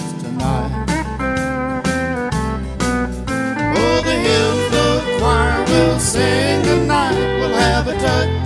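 Instrumental break in a country song: a full band over a steady bass beat. From about halfway through, a lead instrument plays notes that slide up and down in pitch, and the music gets a little louder.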